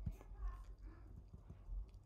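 Faint whimpering of a small dog, with a few soft, irregular taps.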